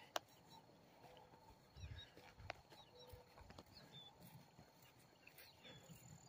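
Near silence: faint outdoor background with a few faint, brief chirps and a soft knock about two seconds in.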